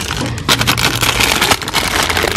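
Clear plastic cake wrapping crinkling and crackling close up as a packaged cake is handled and lifted from a shelf.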